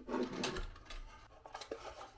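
Hands working a small unfinished wooden box on a tabletop: a metal nut and washer turned by hand on its base, with light rubbing and scraping and a few small knocks.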